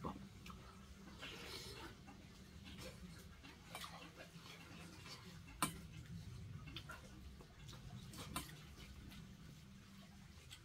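A metal spoon scraping and clinking in a stainless steel bowl, with quiet chewing, over a steady low hum. The sharpest clink comes about five and a half seconds in, another near eight and a half.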